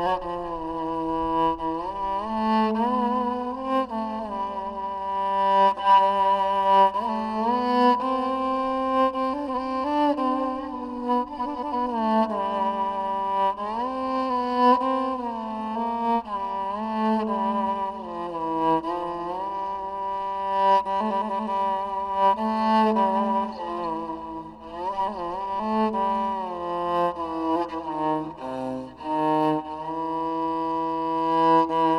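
Turkish rebab, a bowed spike fiddle, played solo: a single melodic line of held notes with frequent slides between pitches.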